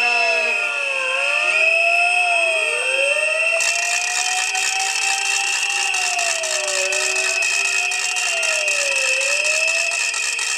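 Wailing siren, its pitch rising and falling every second or two, with more than one wail overlapping. About three and a half seconds in, a rattling hiss joins it.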